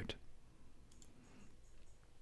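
A single faint computer mouse click about a second in, pressing an on-screen button; otherwise near silence with room tone.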